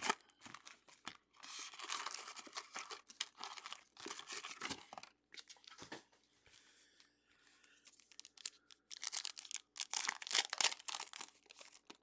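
Trading-card pack wrappers being torn open and crinkled by hand, with cards handled and shuffled. The rustling comes in two irregular spells with a quieter stretch in the middle.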